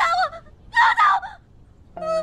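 A young woman's frightened, high-pitched cries pleading 'don't hit me', in two short outbursts.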